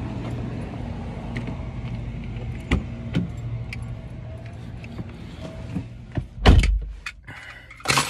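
A steady low background rumble with a few light clicks of handling and keys. About six and a half seconds in comes a heavy thud, a car door shutting, and a sharp knock follows near the end.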